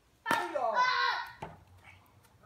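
A plastic toy bat hits a pitched plastic ball with a sharp crack about a third of a second in, and a child's voice cries out at once, falling in pitch; a second short knock follows about a second later.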